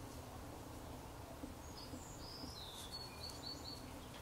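Quiet room tone with a low hum, and a few faint, short high-pitched chirps in the middle.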